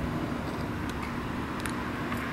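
Steady low background rumble with a faint steady hum and one or two faint clicks.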